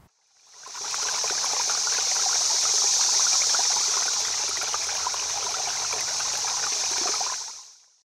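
Running water, a steady stream or trickle with fine splashy crackle, fading in about a second in and fading out near the end.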